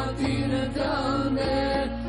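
An Albanian ilahi, an Islamic devotional song, sung in a chant-like style over a steady low drone in the backing.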